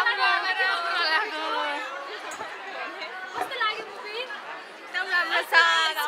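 Several voices talking over one another: the chatter of a crowd of people, with the voices dipping a little in the middle and growing louder again near the end.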